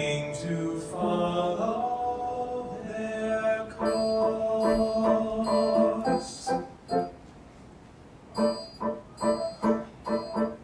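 Two male voices singing sustained notes together over piano accompaniment. About six seconds in the singing stops and the piano plays short, separated chords, with a brief lull before the chords pick up again at about two a second near the end.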